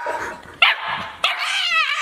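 Golden retriever puppy giving a few high-pitched yips and barks, the last one drawn out and falling in pitch.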